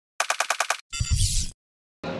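Edited intro sound effect: a quick burst of about seven sharp pulses like machine-gun fire, followed by a short whoosh with a low rumble that cuts off about a second and a half in.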